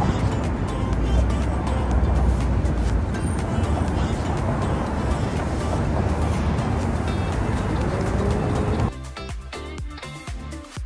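Steady car traffic noise from the bridge roadway under background music; the traffic sound cuts off suddenly about nine seconds in, leaving only the music.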